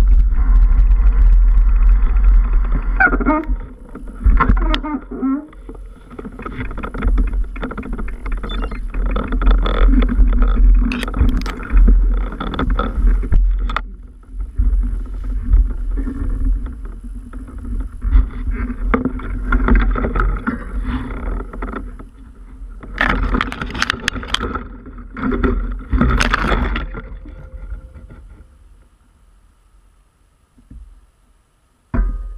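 Off-road bike ridden along a rough woodland trail: rumble of wind on the microphone with clattering and knocks over the bumps, and a steady hum underneath. It dies away over the last couple of seconds as the bike comes to a stop on its side.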